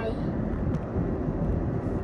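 Steady road and engine noise of a car moving along a highway, heard from inside the cabin.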